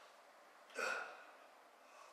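A man's sharp, forceful breath out with the effort of a weight-training rep, once, about three quarters of a second in.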